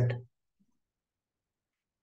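The tail of a spoken word ending about a quarter second in, then silence.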